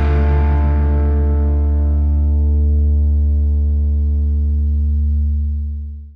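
A rock band's final chord held and ringing out, led by distorted electric guitar over a strong low note, its brightness slowly dying away. It fades out quickly near the end.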